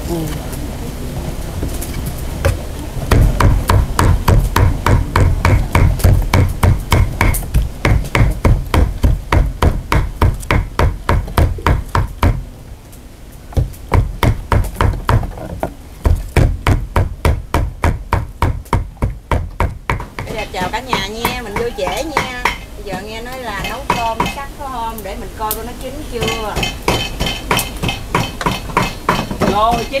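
Cleaver mincing meat on a chopping board: a steady run of loud, sharp chops, about three or four a second, with a short break about halfway and softer chopping near the end.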